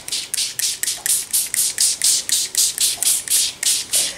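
Hand trigger spray bottle of beet juice pumped rapidly, about four sprays a second, misting a sheet of paper.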